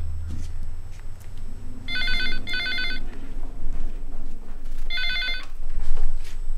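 Landline telephone ringing with an electronic warbling trill in double rings, about two seconds in and again near the end. The last ring stops after a single burst as the receiver is picked up.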